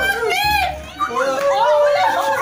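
Several young people laughing, shrieking and cheering at once, high excited voices overlapping.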